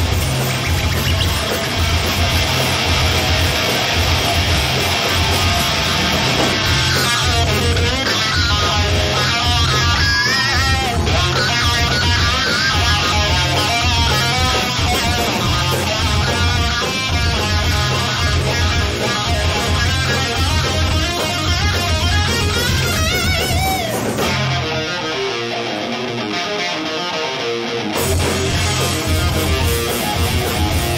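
Live rock band playing an instrumental passage: electric guitar, bass guitar and drums, with a wavering lead guitar line in the middle. About 24 seconds in, the bass and drums drop out and a guitar plays alone for a few seconds before the full band comes back in.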